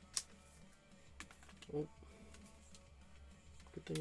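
Trading cards and a plastic card sleeve being handled by hand: a few faint, sharp clicks and taps over a low steady hum.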